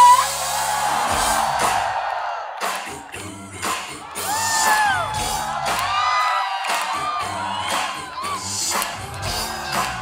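Live concert sound: a band playing with a steady drum beat while a female singer sings gliding vocal runs, with the crowd whooping and cheering.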